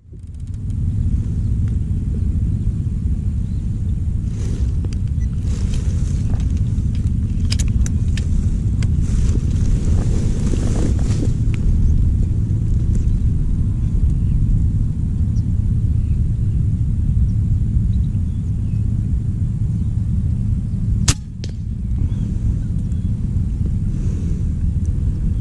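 Steady low rumble of wind buffeting the camera microphone, with faint rustling and one sharp click about 21 seconds in.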